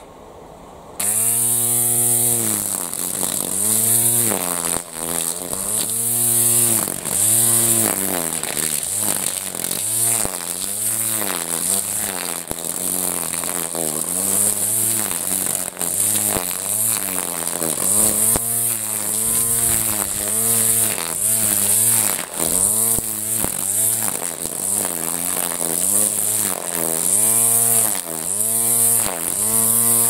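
String-line grass trimmer (strimmer) cutting long, lush grass: it starts about a second in, and its motor whine rises and falls again and again as the line works into the grass, over a steady high hiss.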